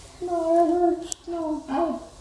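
A high voice singing or sing-song calling, two held notes with a short break about a second in.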